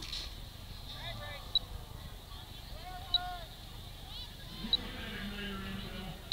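Faint, muffled voices of people around the launch pad, picked up by the rocket's onboard camera, with a short high beep repeating about every second and a half.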